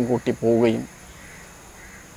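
A man speaking, breaking off under a second in, followed by a pause with only faint steady background.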